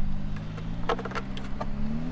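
A few light clicks and knocks of a battery and its wires being handled and set down inside a plastic ammo can, over a steady low mechanical drone.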